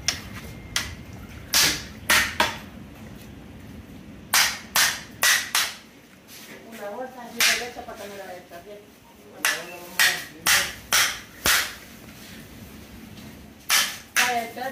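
A hammer beating on the spine of a cleaver, driving the blade through a whole fish into a wooden stump chopping block to cut it into steaks. Sharp blows come in quick groups of three to five, with short pauses between.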